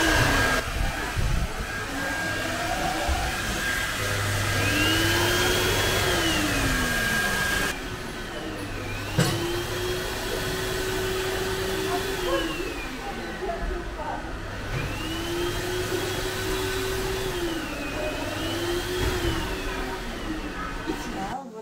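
Wall-mounted Starmix hair dryer blowing air steadily, its noise thinning a little about eight seconds in. A tone glides up and down in several slow arches over it.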